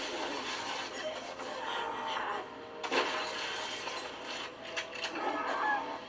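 A horror movie trailer's soundtrack played through a desktop computer speaker: dramatic music with voices, and a sudden crash about three seconds in.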